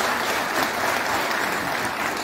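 An audience applauding, many hands clapping steadily.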